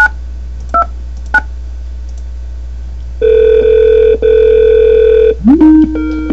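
Telephone call tones on a softphone line: three short DTMF keypad beeps as a number is dialled, then a steady ringing tone lasting about two seconds with a brief break in the middle, as a call from FreeSWITCH goes out to the Skype network. Near the end a rising tone slides into another steady tone as the call connects.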